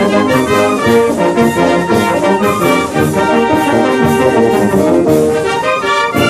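Brass band music playing a son, with trumpets and trombones carrying a busy melody at a steady level.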